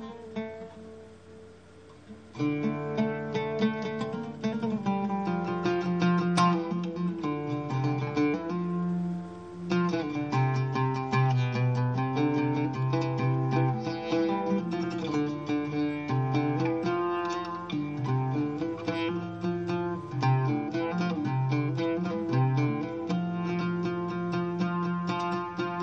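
Solo oud improvisation, the strings plucked. A few ringing notes at first, then from about two seconds in a steady stream of notes that grows faster and denser from about ten seconds in.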